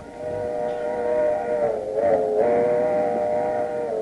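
Train whistle sound effect: a chord of several notes held steadily for about four seconds, dipping slightly in pitch midway, then fading out.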